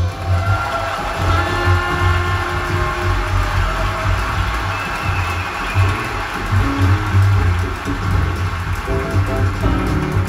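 Live jazz recording played back through a hi-fi stereo system's loudspeakers and picked up in the listening room, with prominent deep bass notes.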